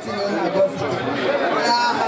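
Speech: a woman talking into a handheld microphone, with chatter from people around her.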